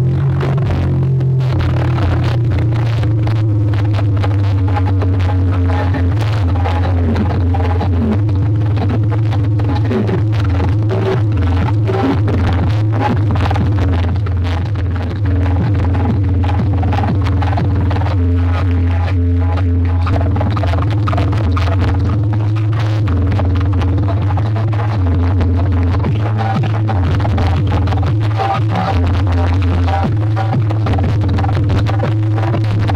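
Electronic dance music played loudly through a large truck-mounted DJ speaker rig of horn loudspeakers, with a heavy, steady bass line throughout.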